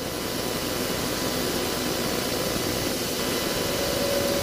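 Steady background noise in a pause between speech: an even rushing hiss with a few faint steady tones, unchanging throughout.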